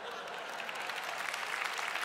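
A large audience applauding, swelling over the first second and then holding steady.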